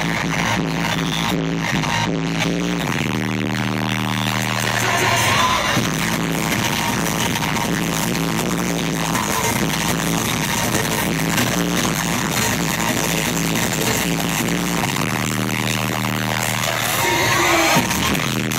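Loud live electronic bass music from a festival sound system, with heavy bass notes held for a few seconds twice.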